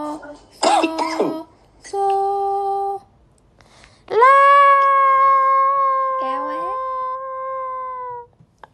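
A young woman's voice holding steady sung solfège notes (so, la) to steer a pitch-controlled game: a short held note, a brief rough burst about a second in, another held note, then after a short pause one long level note of about four seconds.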